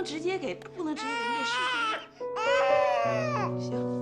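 A baby crying in two long wails of about a second each, after a few short broken cries, over soft held background music.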